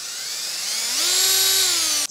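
Cordless drill spinning a bit that is no longer sharp against a screw in a plastic tape-measure case. The motor's whine rises in pitch about half a second in, then holds steady until it stops near the end.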